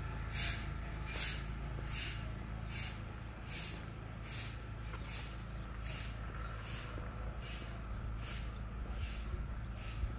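Footsteps on a paved sidewalk, a little more than one step a second, each a short gritty scuff, over a steady low rumble.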